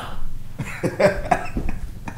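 Several short vocal bursts from a person in quick succession, an astonished reaction to surprising good news, between exclamations.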